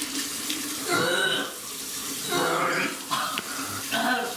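Water running from a tap into a sink, with a woman retching over it twice, about a second in and again past the middle.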